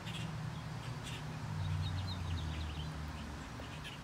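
A small bird chirps a quick series of short high notes about a second and a half in, over a steady low outdoor rumble.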